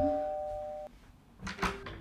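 Two-tone ding-dong doorbell: its higher and lower chimes ring on and fade, then cut off abruptly about a second in. A short click follows near the end.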